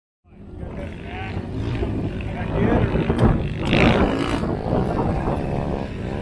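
Quad and side-by-side engines running, with people talking over them. The sound fades in just after the start.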